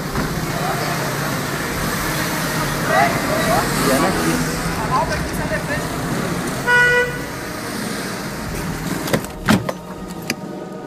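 Busy street commotion: vehicle engines and traffic noise under scattered shouting voices, with a short car horn toot about seven seconds in.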